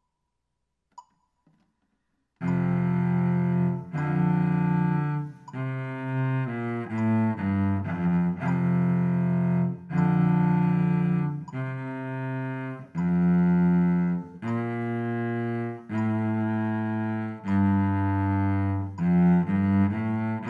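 A metronome tick about a second in. From about two and a half seconds a solo cello plays a slow half-position etude with the bow, in held notes that change every second or so.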